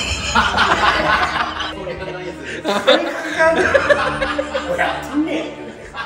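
Men talking loudly in Japanese and laughing.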